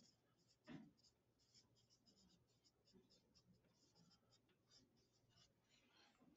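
Near silence with faint, irregular scratching of students writing on paper, copying down dictated text. A single brief faint sound comes under a second in.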